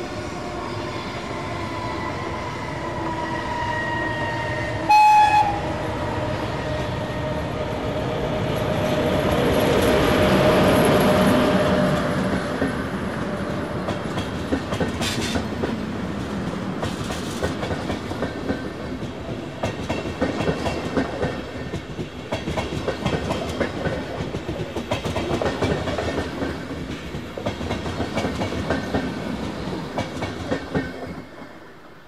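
A historic electric locomotive hauling a passenger train approaches and runs past. A steady whine drops slowly in pitch as it nears, and a short horn blast sounds about five seconds in. The sound swells as the locomotive goes by and then gives way to the clickety-clack of the coaches' wheels over the rail joints.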